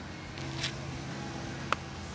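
Quiet open-air ambience with a faint steady low hum, then one sharp click near the end: a wedge striking the golf ball on a short chip shot.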